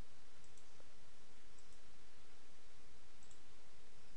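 A few faint, scattered clicks of a computer keyboard being typed on, over a steady background hiss with a faint hum.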